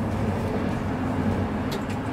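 Steady low background hum, an even drone with no sudden sounds.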